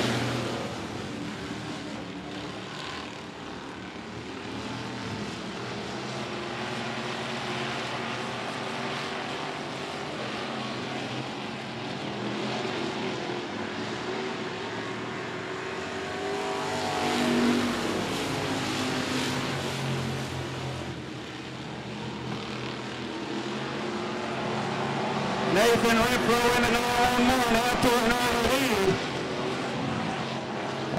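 Dirt-track stock cars racing around the oval as a pack, their engines running and revving continuously. The engines swell to a peak partway through as the cars come past closer, and grow louder again near the end.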